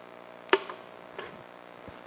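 Wire cutters snipping a wire inside an X-ray tube head: one sharp snip about half a second in, then a fainter click a little after a second.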